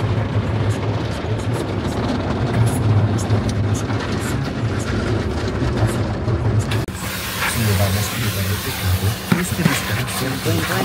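Automatic car wash spraying and scrubbing the car, heard from inside the cabin as a dense, steady wash of water and machinery noise with a low hum, a voice faintly underneath. The sound changes abruptly about seven seconds in.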